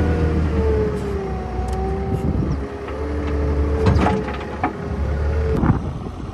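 Weidemann compact wheel loader running, heard from inside its cab: a steady engine drone with a whine that drifts up and down in pitch, and two sharp knocks in the second half.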